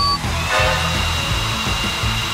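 Canister vacuum cleaner motor switching on about half a second in and running steadily with a high whine, set to blow air out.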